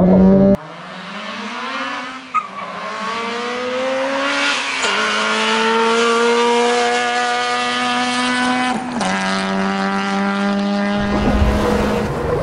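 Honda Civic 2.0 four-cylinder engine at full throttle on a standing-mile run. It is loud at the launch for the first half second, then climbs through the gears with upshifts about two, five and nine seconds in, the pitch rising only slowly in the top gears.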